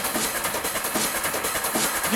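Hard trance DJ mix in a breakdown: the bass drum has dropped out, leaving a dense hissing build with a fast, even run of hits.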